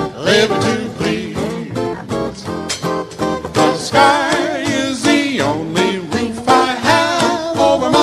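Live hillbilly-jazz band: male voices singing over strummed guitar, string bass and a steady washboard rhythm.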